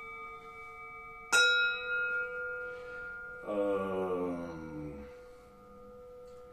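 Metal Tibetan singing bowls resting on a person's back ring with several steady overlapping tones; about a second in, one bowl is struck with a wooden mallet and rings out loud and bright, then slowly fades. Midway a lower, buzzy sound slides down in pitch for about a second and a half.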